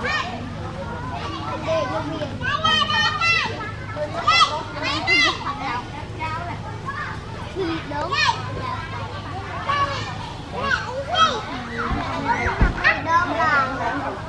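Children chattering and calling out, several high voices overlapping, over a steady low hum, with a brief low thump near the end.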